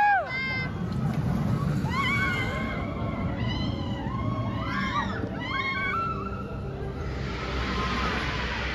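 Roller coaster riders screaming as the train on the Mystic steel coaster passes overhead: a loud cry at the start, then several fainter, rising-and-falling screams over the next few seconds. A low rumble from the train running on the track lies underneath.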